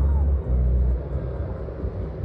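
A low, uneven outdoor rumble, with a brief dip about half a second in.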